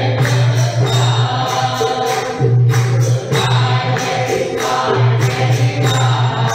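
A congregation singing a devotional bhajan together in call-and-response style phrases, with rhythmic percussion keeping a steady beat.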